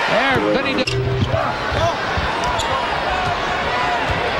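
Arena crowd noise of a live NBA basketball game heard through a TV broadcast, with the ball dribbling on the hardwood court and a brief snatch of commentary in the first second.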